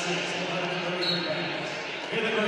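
A voice over the arena public-address system, holding one long drawn-out note that echoes in the large hall and stops just before the end.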